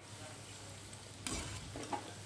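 Moong dal pakoras sizzling as they deep-fry in hot oil in a steel pot, with a wire skimmer stirring through them; a louder rustle of the skimmer comes a little over a second in.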